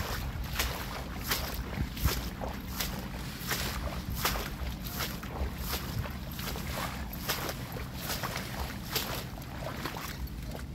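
Dry reeds and grass rustling and crackling as someone pushes into them and crouches, in irregular short crackles, over a low rumble of wind on the microphone.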